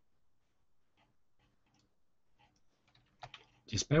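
Faint, scattered computer keyboard clicks, about half a dozen spread irregularly, then a man's voice begins near the end.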